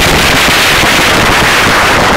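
Loud, steady wind rush buffeting the microphone, with road noise, from a vehicle driving at highway speed; the buffeting gives it a crackly edge.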